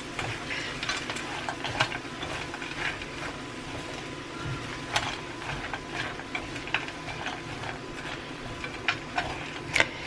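Silicone spatula stirring spinach and mixed vegetables in a nonstick skillet: irregular soft scrapes and small clicks against the pan over a steady low hiss.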